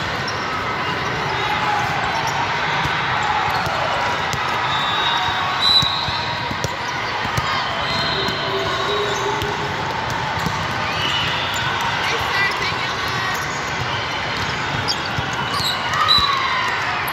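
Volleyball being played in a large, echoing hall: a ball being struck and sneakers squeaking on the sport court now and then, over steady background chatter from players and spectators.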